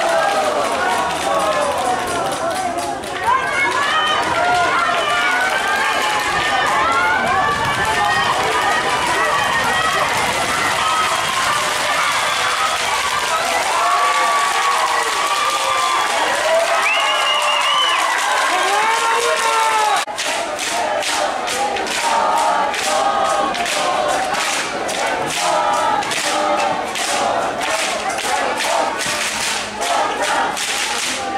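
Sideline crowd and youth players shouting and cheering, many voices at once, during a football play. About two-thirds of the way through the sound cuts abruptly to a quieter spread of voices over a fast run of sharp claps.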